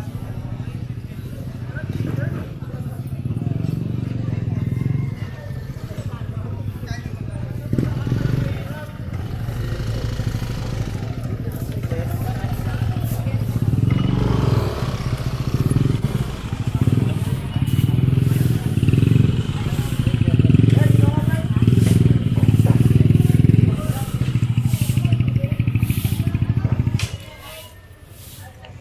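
Motorcycle engine running close by in a busy street, with people's voices around it. It swells and eases, is loudest in the second half, and drops off suddenly near the end.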